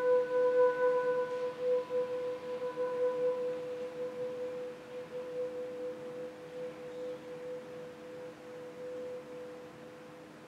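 Grand piano's held chord ringing on after the music breaks off, two mid-range notes a fifth apart slowly dying away with a slight wavering.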